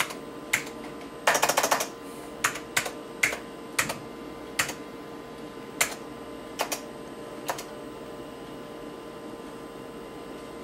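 Keystrokes on a computer keyboard: a quick run of key clicks about a second in, then single presses spaced out over the next six seconds as a DOS command is typed and entered. A steady faint hum from the running PC lies under them.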